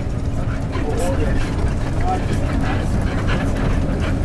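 Steady low drone of a coach's engine and road noise heard inside the moving bus, with a constant engine hum, under faint voices.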